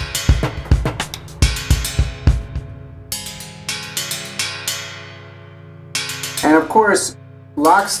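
Electronic drum pattern from a Native Instruments Maschine, with kick drum, hi-hats and cymbal over held synth notes. About three seconds in the drums stop and the held notes ring on and fade away.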